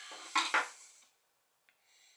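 A brief clatter of hard objects being handled or set down, with two sharper knocks close together within the first second.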